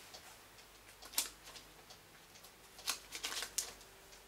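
Pages of a paperback book being handled and turned: a few soft paper rustles, one about a second in and a short cluster around three seconds.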